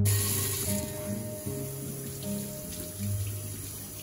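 Kitchen tap water running into a stainless steel sink as a peeled green mango is rinsed by hand under the stream. The water starts abruptly and is loudest at first, over background music.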